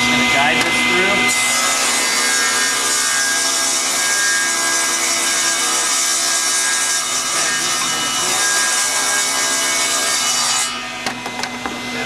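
Table saw running, then ripping a board along the grain from about a second in: a steady cutting noise over the motor and blade whine that lasts about nine seconds, before the saw spins free again near the end.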